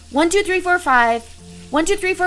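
A drawn-out voice, speaking or counting in long words, over a faint steady hiss of running tap water.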